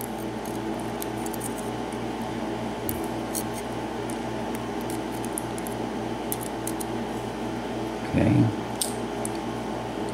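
Faint small metallic ticks of steel tweezers picking pins and springs from a brass lock cylinder, over a steady low room hum, with a short low sound about eight seconds in.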